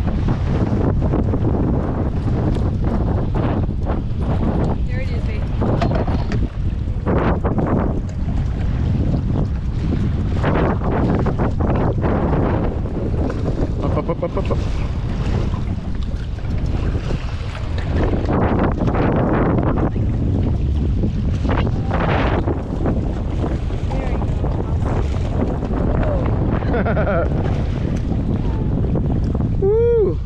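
Wind buffeting the microphone in a loud, steady rumble that swells and eases with the gusts, over choppy water.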